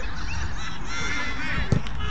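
A few short honking calls, then a football kicked once with a sharp thud near the end.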